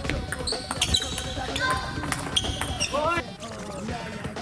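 Table tennis ball clicking sharply off rubber bats and the table several times during a rally. Short high squeaks, typical of shoes on a wooden sports-hall floor, come in between the clicks, and a short voice is heard about three seconds in.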